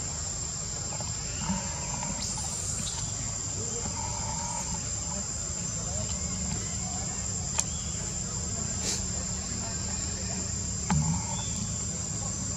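Steady high-pitched insect drone over a low background rumble, with a few sharp clicks, the loudest near the end.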